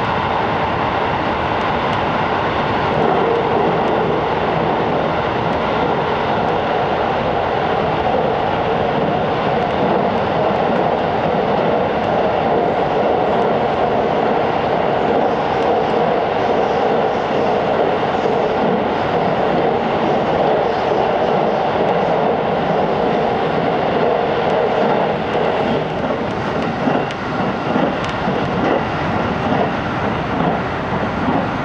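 Inside a 373 series electric train running at speed through a tunnel: a loud, steady noise of wheels on rail and rushing air. Near the end the sound eases and turns uneven as the train leaves the tunnel.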